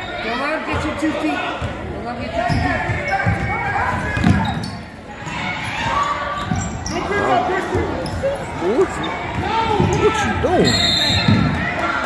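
Basketball game in a gym: a ball bouncing on the court amid many voices echoing in the large hall, with short squeaks in the second half.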